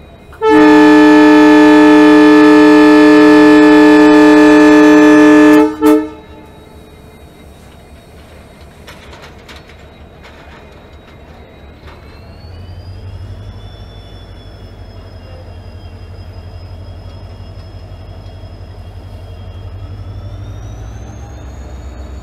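WDP4D diesel locomotive's air horn sounding one long blast of about five seconds, then a short toot. The engine's rumble and a thin whine then rise in pitch as the locomotive starts pulling the train away.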